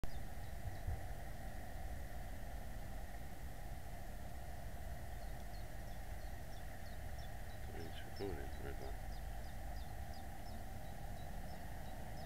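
Faint outdoor ambience: a steady hiss with a thin high hum running under it, small bird chirps coming and going, and a brief distant voice about eight seconds in.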